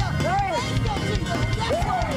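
Fast church praise music with a driving drum beat, and voices crying out over it in rising-and-falling calls.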